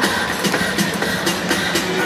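Jump ropes slapping a hardwood court in a quick, uneven run of sharp clicks, over music and crowd noise in a large arena.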